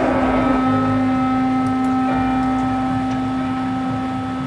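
Marching band holding one long, steady chord of a few sustained notes, with a strong low note at the bottom.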